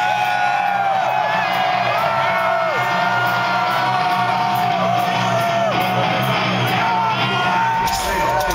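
Loud live metal concert sound from inside the crowd: many fans yelling and whooping in long held cries that drop off at the ends, over a steady low rumble from the stage PA.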